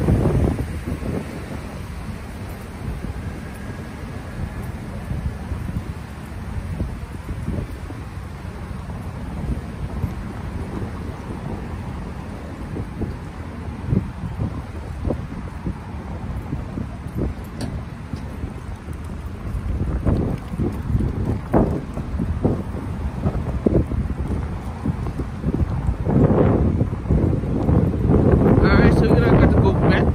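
Steady rushing of water falling into the 9/11 Memorial reflecting pool, with wind buffeting the microphone; the low buffeting thumps come thicker in the last third.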